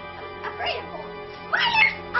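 Two short wordless cries that glide up and down like meows, the second louder, over steady background music.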